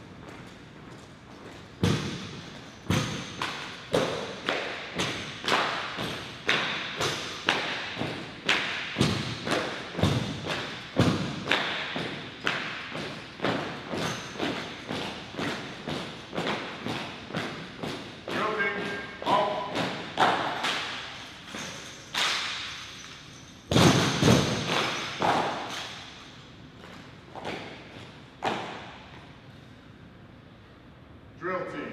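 A drill team's marching footsteps: many heels striking a hard floor in unison at a steady cadence of about two steps a second, each strike echoing in a large hall. A louder flurry of impacts comes about three-quarters of the way through, after which the steps thin out.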